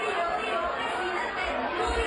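Crowd of clubgoers shouting and chattering in a packed nightclub, with the music's heavy bass cut out.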